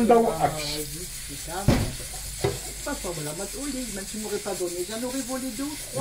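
Cauliflower croquettes frying in hot oil in a pan, a steady sizzle, with two sharp clicks about two seconds in.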